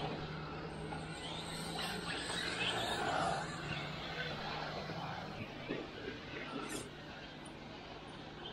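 Steady hum of a small quadcopter drone's propellers, with the electric whirr of an RC crawler's motor moving over rough ground. The hum drops away about seven seconds in.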